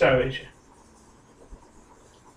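A man's lecturing voice ends a word in the first half second, then near-quiet room tone with one faint low knock about one and a half seconds in.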